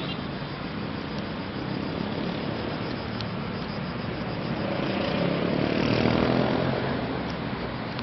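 Steady road-traffic noise, with one vehicle passing that grows louder a few seconds in and then fades away.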